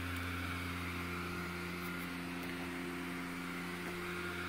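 Airblown inflatable's built-in blower fan running steadily: an even hum with a faint rush of air.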